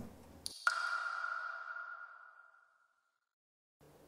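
A single bell-like ping sound effect that starts about half a second in and rings out, fading away over about two seconds.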